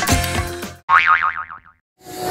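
Transition music that stops under a second in, followed by a cartoon 'boing' sound effect: a wobbling tone that falls in pitch over about a second.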